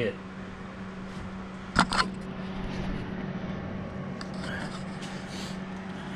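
Steady low background hum, with two quick knocks close together about two seconds in.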